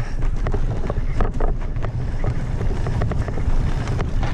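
Mountain bike descending a rough dirt trail at speed: wind buffeting the microphone over a constant clatter of short knocks and rattles from the bike and its tyres on the bumpy ground.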